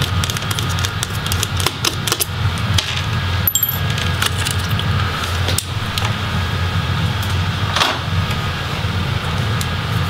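Small clicks and plastic handling noises as a screwdriver backs out the screws of a laptop's plastic cooling fan and the fan is lifted free of the case. A few brief scrapes stand out, over a steady low hum.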